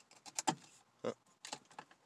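A few faint, light clicks and rustles of the worn shift ribbon on an automatic shifter being handled and worked loose around the shift lever. A small group of clicks comes about half a second in, and several more near the end.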